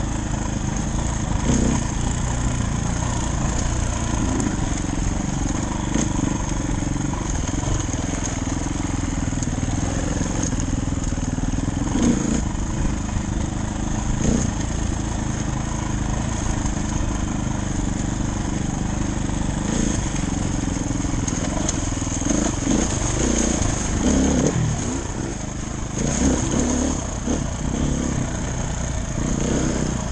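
Dirt bike engine running under way on a rough trail, its revs rising and falling, with a few short knocks over the ground.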